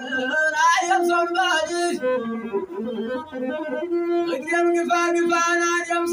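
A masinqo, the Ethiopian one-string bowed fiddle, is bowed in a traditional azmari tune while a man sings along. The voice is strongest in the first two seconds, and the fiddle's long held notes carry on after it.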